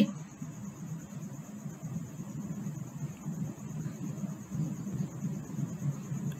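Faint, steady low background hum or rumble with no distinct events.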